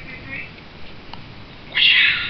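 A person's high-pitched wordless voice: short squeaky sounds near the start, then a louder, shrill sound near the end.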